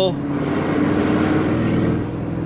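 Tuned Audi RS7 C8's twin-turbo V8 pulling under light throttle, heard from inside the cabin, its note rising a little. The exhaust valves are closed in comfort mode, so it is a subdued V8 sound.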